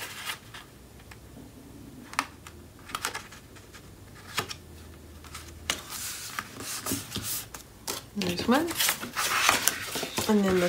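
Paper and cardstock being handled: scattered light taps and clicks with rustling that grows busier in the second half, as scored paper flaps are positioned and pressed onto a base page.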